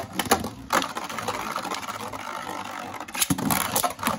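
A Beyblade spinning on a plastic stadium floor with a steady whirring hiss, after a few sharp clicks in the first second. About three seconds in, a second Beyblade is launched into the stadium with a sudden, louder burst of whirring.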